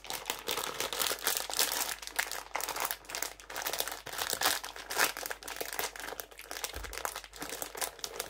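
Clear plastic snack bag crinkling as it is handled and ripped open, with dense, irregular crackles throughout.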